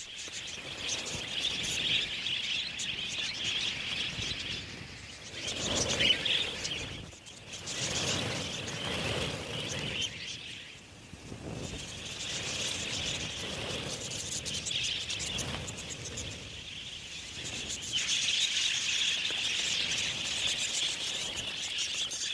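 A flock of budgerigars chattering, a dense continuous twittering that swells and fades, dipping about halfway through and growing louder near the end.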